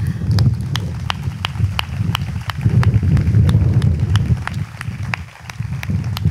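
Audience applauding, with one person's claps standing out, sharp and evenly spaced at about three a second.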